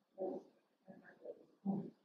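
Four short, quiet vocal grunts from people working through a grappling move.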